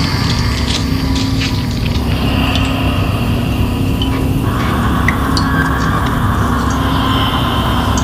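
Loud, steady low drone from a hardcore band's stage amplifiers and electronics while no song is being played. A held hum tone sits in it, with scattered small clicks and a few higher tones drifting over it.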